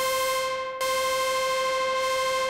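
Reaktor Monark Moog-style synthesizer holding a high, buzzy lead note, with its noise source mixed in as a hiss under the tone. The note is cut and played again at the same pitch about a second in. The filter cutoff is open and the resonance turned down.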